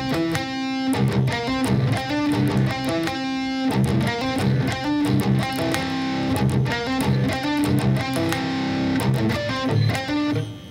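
Electric guitar with its low string dropped to C, playing a short riff four times over: two palm-muted hits on the open low string, a hammer-on on the D string, one more low-string hit and a second hammer-on.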